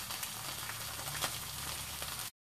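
Stuffed salmon fillet sizzling in a cast iron skillet over a gas flame: a steady frying hiss with a few small crackles.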